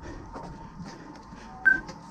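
Soft footsteps and gear rustle of a person walking on asphalt, with one short, high electronic beep near the end.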